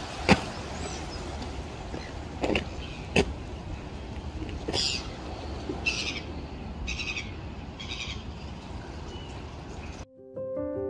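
Gulls calling at a seabird colony: a run of harsh, high calls about once a second through the second half, over a low steady rumble. A few sharp clicks come in the first half, the loudest about a third of a second in.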